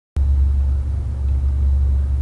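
A loud, steady low hum that starts with a click as the recording begins.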